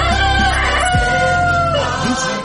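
A rooster crowing in the first second, laid over Christian music with held keyboard notes and a bass-drum beat about once a second, as a morning wake-up sound effect.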